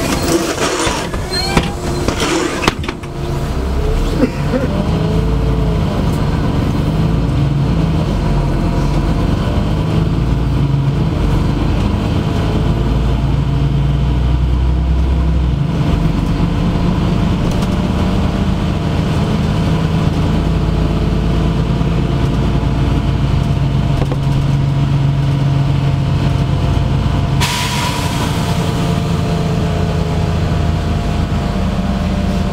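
Interior sound of a LiAZ-5292.65 city bus driving: the engine and drivetrain drone steadily, with knocks and rattles in the first few seconds and a short rising whine soon after. A hiss swells up near the end.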